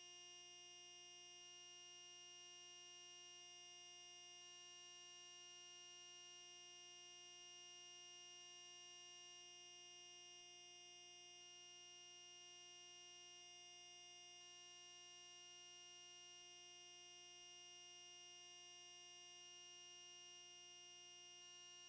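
Near silence with a faint, steady electronic hum of several fixed tones.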